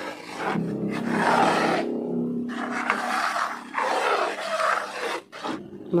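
Metal spatula scraping and stirring a stiff, floury mix of cornstarch, cassava flour and cream corn in a pan, a rasping sound in three long strokes. This is the dry mixing before any water is added.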